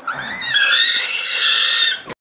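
A long, high-pitched squeal, most likely a person's voice. It rises in pitch at the start, then holds steady and cuts off abruptly near the end.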